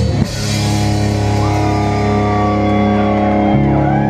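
Live rock band with electric guitars and drum kit: a cymbal crash about a quarter second in, then a chord held and ringing out, changing slightly near the end.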